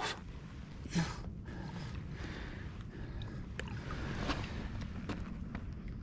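Wind rumbling on the microphone over small lapping of shallow lake water at the bank, with a few faint brief splashes as a released bass swims off.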